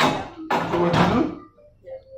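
Loud voices talking or exclaiming for about the first second and a half, then a faint steady tone of background music.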